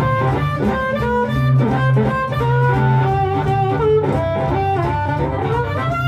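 Blues harmonica solo, played live, with held notes that slide in pitch, over a guitar keeping the rhythm.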